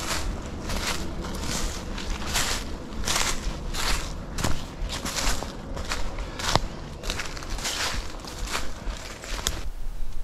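Footsteps crunching through dry leaf litter, about one step every three-quarters of a second, with a couple of sharp clicks partway through.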